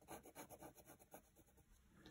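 Faint scratching of a graphite pencil drawing a curved line on paper, in quick short strokes that fade away after about a second.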